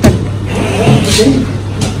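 People talking over a steady low hum, with a short click at the start and a brief hiss about a second in.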